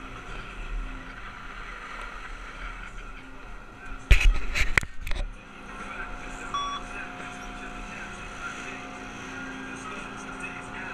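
Skis sliding over packed snow against the steady hum of chairlift machinery, with a loud burst of clattering knocks and scraping about four seconds in.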